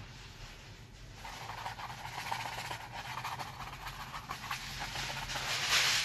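Bristle brush scrubbing oil paint onto canvas: rough rubbing strokes that start about a second in and grow louder toward the end.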